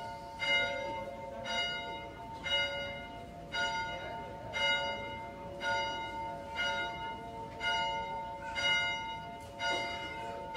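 Large bell struck about once a second, each stroke ringing on under the next, rung in turn for each graduate.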